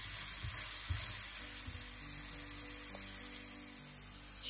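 Chopped onion sizzling in hot oil in a frying pan, being softened until translucent, with a few soft knocks of a spatula stirring it in the first two seconds. The sizzle fades slightly towards the end.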